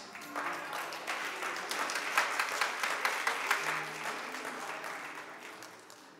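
Congregation applauding, a dense patter of many hands that dies away over the last second or so.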